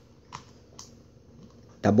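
A couple of light clicks from hands handling an album card and a plastic-sleeved comic book on a plastic surface, about half a second apart, then a man's voice starts near the end.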